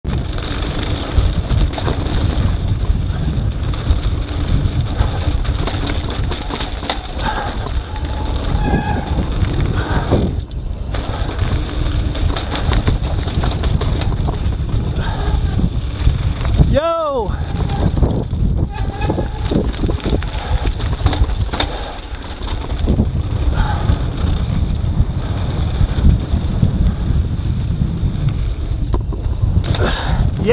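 Wind buffeting an action-camera microphone over the rumble and rattle of a mountain bike's tyres on a dry dirt trail at speed. A short rising-and-falling vocal call sounds about halfway through.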